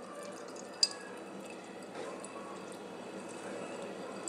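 Faint drips of juice falling from a handful of squeezed spinach into a ceramic bowl, with one sharper tick just under a second in.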